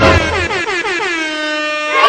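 Edited-in horn sound effect: a loud blaring horn tone that slides down in pitch for about a second and a half, then holds steady.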